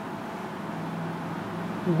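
Steady background noise of a room with a faint low hum through the middle; a man's voice starts right at the end.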